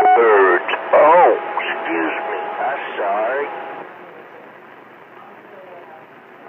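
CB radio receiver playing a thin, muffled voice transmission with a faint steady whistle under it. About four seconds in the signal drops out, and only a steady hiss of receiver static is left.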